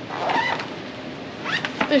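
A short voiced sound from a person, then a few light knocks near the end as the word "This" begins.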